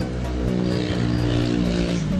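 A steady engine drone at an even pitch.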